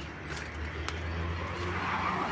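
Road traffic on a nearby highway: a steady rumble of cars, with the tyre noise of a passing vehicle swelling toward the end.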